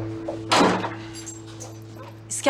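A heavy wooden front door shut with a single thud about half a second in, over soft sustained background music.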